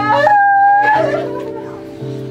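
A woman's high wailing cry in grief, one note held for about a second after a short rise. It sounds over sustained, steady keyboard chords.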